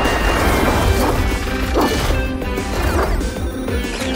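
Cartoon soundtrack: music layered with heavy mechanical sound effects over a constant deep rumble, with a couple of swooping glides about two and three seconds in.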